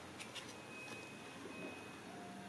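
Quiet room with two faint short ticks a fraction of a second in, as a tarot card is picked up off a wooden table and turned over in the hands.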